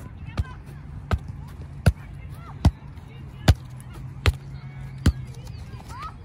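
Soccer ball on a Star Kick solo trainer's elastic tether being kicked over and over as the cord springs it back to the foot: seven sharp thumps, evenly spaced about every 0.8 seconds.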